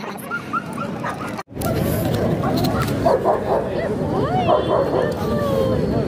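Tibetan mastiffs barking and whimpering over steady crowd chatter, starting about a second and a half in, after a brief break in the sound.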